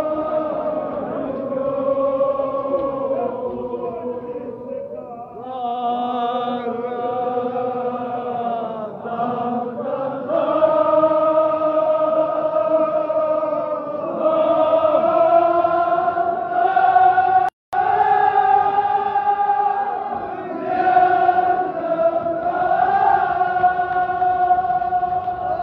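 A group of men chanting a Muharram mourning lament in unison, in long held phrases. The sound cuts out for a split second about three-quarters of the way through.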